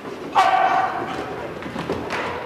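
Puppies playing: a thump and a high puppy yelp about half a second in, the yelp fading over about a second.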